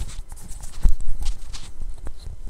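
A run of irregular knocks and taps, the loudest one just under a second in.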